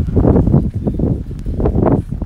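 Wind buffeting the microphone: an uneven low rumble that swells and drops.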